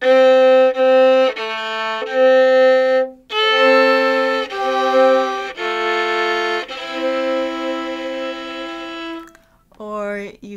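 A fiddle played with the bow: a slow country double-stop fill, two notes sounding together, the lower one mostly held while the upper one moves. It is a phrase of several sustained notes, with a short break about three seconds in, and it ends about nine seconds in.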